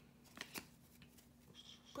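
Near silence with faint handling of trading cards: two soft clicks about half a second in.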